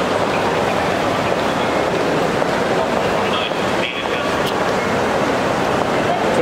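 Steady, loud hubbub of many indistinct voices over continuous background noise, with a brief dip about four seconds in.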